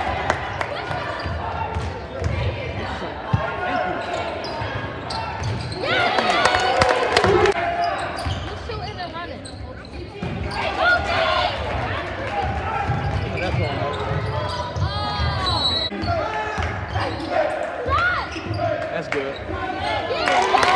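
Basketball game in a gym: the ball bouncing on the hardwood court during play, with shouting voices from players and spectators echoing in the hall.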